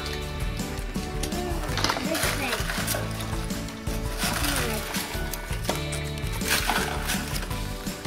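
Background music playing under faint children's chatter, with a few short crinkles of foil wrappers being unwrapped.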